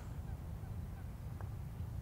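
Quiet outdoor ambience with a steady low rumble, and a single faint click of a putter striking a golf ball about one and a half seconds in.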